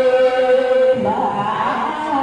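A solo voice singing a Maranao song in a chant-like style. It holds one long steady note, then about a second in moves into a wavering, ornamented phrase.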